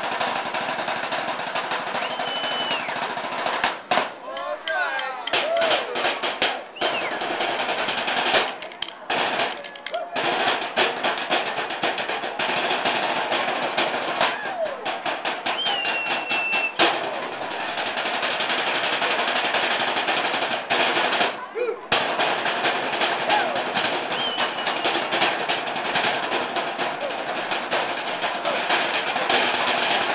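Three custodians drumming fast rolls and rhythms on metal trash cans with drumsticks: a dense, rapid metallic clatter with a few short breaks.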